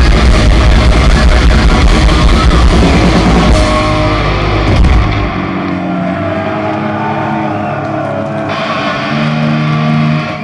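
Heavy metal band playing live with distorted electric guitars and drum kit, loud and dense, until about five seconds in, when the drums and low end drop out and held guitar notes are left ringing as the song ends.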